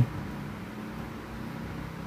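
A steady low background hum, even throughout, with no knocks or clinks standing out.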